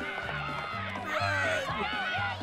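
Cartoon soundtrack: background music with a repeating bass line, and a character's raised voice about a second in.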